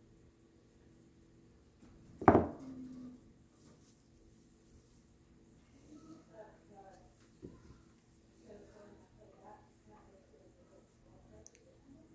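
A small metal pottery modelling tool set down on a worktable: one sharp knock about two seconds in, with a short ring after it.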